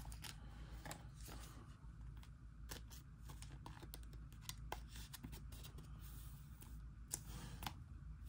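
Faint handling of trading cards: scattered soft clicks and rustles of card stock in the fingers, over a low steady hum.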